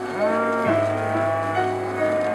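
Hereford cattle: one cow gives a low moo near the start, rising in pitch and then holding for about half a second, over steady background music.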